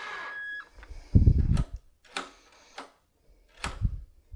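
Battery drill with a Phillips bit driving a wood screw into a deadbolt faceplate, its motor whine stopping about half a second in. A heavy thump follows, the loudest sound, then a few sharp clicks and knocks of handling at the door.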